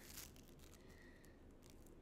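Faint crackling and rustling of Playfoam, tiny foam beads held together by a weak glue, being pulled and squeezed in the fingers close to the microphone, with a short louder crackle right at the start.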